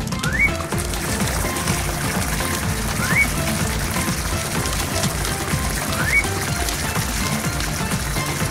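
Cartoon background music over a steady hiss of a fire hose spraying water, with a short rising whistle-like note three times, about three seconds apart.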